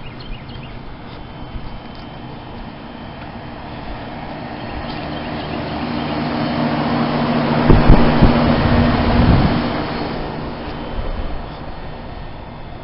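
Trane outdoor heat pump unit running in heat mode: a steady fan and compressor hum that grows louder as the microphone comes close, peaks with a few seconds of gusty rumble about eight seconds in, then fades away.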